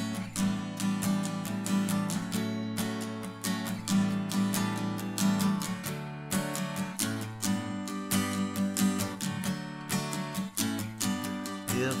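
Martin Road Series GPRS1 acoustic guitar in open D tuning (DADF#AD) being strummed in a steady rhythm, ringing chords changing every few seconds. A man's voice starts singing right at the end.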